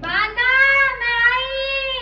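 A high-pitched voice singing two long held notes, with a short break about a second in.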